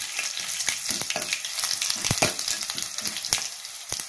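Mustard seeds and cumin spluttering in hot ghee for a tadka: a steady sizzle with many sharp pops, a few louder ones about two seconds in and again after three seconds.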